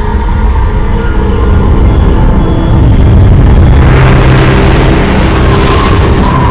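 Cinematic intro sound effects: a loud, deep rumble swells in over the first few seconds, with held tones above it. From about four seconds in, a rising whoosh of noise builds.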